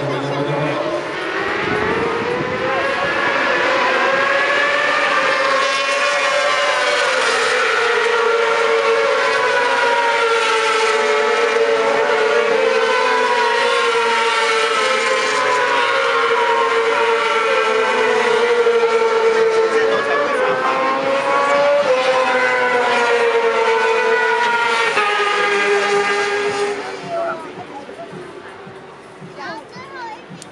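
600cc supersport racing motorcycles running at high revs, several engines together, their pitch rising as they accelerate and dipping at each gear change. The sound fades out near the end.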